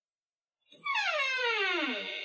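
A wooden door creaking open: one long creak that falls steadily in pitch, starting about a second in.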